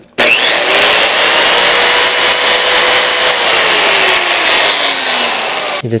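Electric rotary polisher switched on: its motor whine rises in pitch as it spins up to full speed over about a second, runs steadily, then winds down with falling pitch after being switched off a little past three seconds in. Its spin-up to full RPM is slower than a small 4-inch grinder's.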